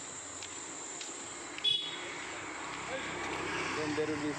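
Street traffic noise, a steady hiss with a brief high-pitched sound about halfway in; the noise swells toward the end as a motor scooter draws close.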